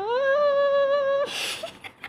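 A woman's nasal hum played through the nose, a finger pressed against one nostril: one note glides up and is held for about a second, then breaks off into a breathy burst of laughter.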